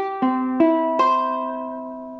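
A ukulele in standard G-C-E-A tuning plays a C major chord. Its strings are plucked one at a time from top to bottom, a little under half a second apart, and each note rings on as the next joins. The full chord then fades slowly.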